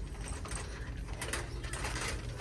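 Plastic rolling shopping basket cart rattling and clicking as it is pushed along a hard store floor, over a steady low rumble.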